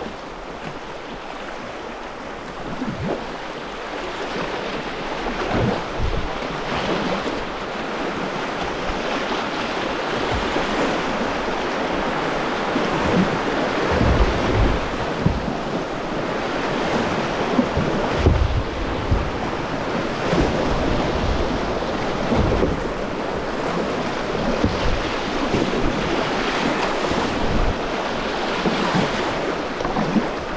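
River rapids rushing steadily around a kayak, with occasional low thumps of wind buffeting the microphone.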